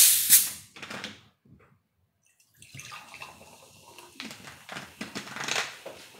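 Handling noise from objects being moved on a table: a loud, sharp noisy burst at the start and another about a second in, then after a short pause a few seconds of irregular noisy handling, loudest near the end.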